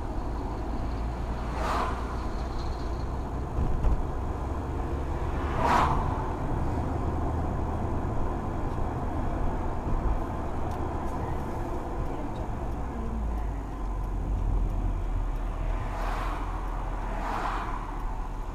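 Mercedes-Benz car driving through city traffic, heard from inside the cabin: a steady low rumble of engine and tyres on the road, with a few brief whooshes.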